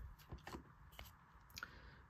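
Near silence with a few faint, short clicks from a thick trading card being handled in its cardboard sleeve.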